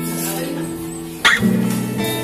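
Background music of a strummed acoustic guitar playing sustained chords, with a loud new chord struck a little over a second in.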